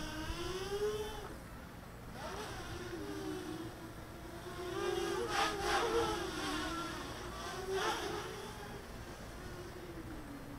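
EMAX Nighthawk Pro 280 racing quadcopter flying on DAL 6040 props: the brushless motors and props give a buzzing whine that wavers in pitch as the throttle changes. It swells about halfway through and briefly again a little later.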